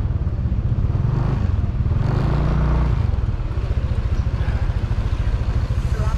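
Small motorbike engine running at low speed, its note rising briefly about two seconds in and then settling to an even, rapid putter near idle.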